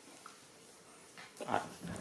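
A young macaque gives a short call about one and a half seconds in, after a quiet start.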